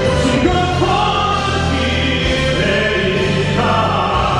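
Male baritone singing live through a handheld microphone over orchestral backing music with choir-like voices. He holds long notes and steps up to a higher note near the end.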